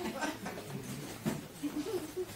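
Low, indistinct voices talking in a small room, with a few short rustles or knocks, once near the start and again just past the middle.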